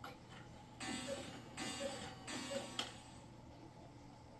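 Boot footsteps on a hard floor: three evenly paced steps about three-quarters of a second apart, starting about a second in, followed by a lighter click.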